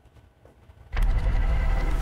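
A short near-silent gap, then about a second in a television news graphics transition sound starts suddenly: a loud, deep rumbling whoosh that keeps going.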